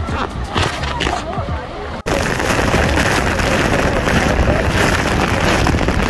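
Voices of passengers on the boat deck, then, after a cut about two seconds in, the loud, steady rush of Niagara Falls' water and spray close to the base of the falls.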